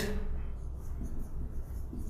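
Felt-tip marker writing on a whiteboard: a run of faint, short strokes as letters are written.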